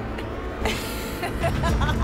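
Horror-trailer sound design: a steady low rumble, with a noisy whoosh about half a second in and brief wavering, eerie tones near the end.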